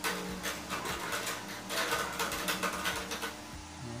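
Acoustic guitar being handled while its strings are loosened at the tuning pegs: rapid, irregular clicks and rattles from fingers and slackening strings.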